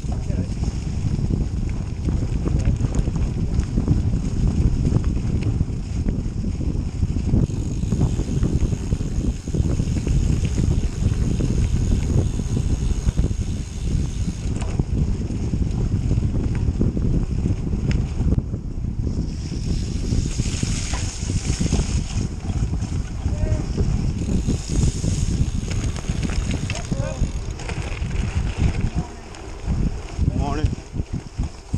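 Wind buffeting the handlebar-mounted camera's microphone while riding a Canyon Grail gravel bike on a dirt trail, mixed with the tyres rolling over dirt and leaves. It is a loud, steady rumble that eases briefly near the end.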